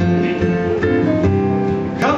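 Live music: an acoustic guitar being strummed, its chords ringing in a steady rhythm.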